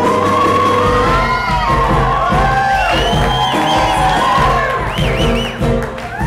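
Live amplified pop performance: a woman sings a melody with swooping vocal runs over a backing track with a steady low beat, while a crowd cheers.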